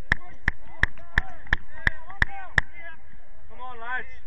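A steady run of sharp taps, about three a second, that stops about two and a half seconds in, over voices calling in the background, with a louder call near the end.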